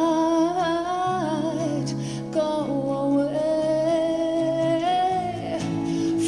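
A woman singing long, held notes with slight bends in pitch, accompanied by acoustic guitar.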